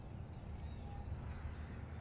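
Low wind rumble on the microphone, with a faint short high chirp about a third of a second in.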